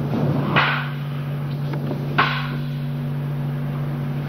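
A steady low hum with two short noisy thuds, one about half a second in and one a little after two seconds.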